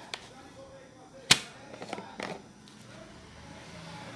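Sharp plastic clicks and knocks from a thermos jug being handled and its lid opened: one right at the start, a loud crisp click about a second in, then two smaller knocks a second later.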